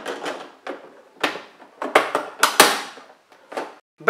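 Plastic hinge cover on the back of an ASUS ET2311 all-in-one PC being fitted by hand: a handful of separate plastic clicks and knocks, the loudest about two and a half seconds in as it seats onto the stand housing.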